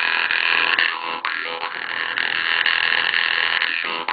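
Vietnamese three-tongued Jew's harp played at the mouth: a continuous plucked drone whose overtones slide up and down as the mouth shape changes, re-plucked about a second in.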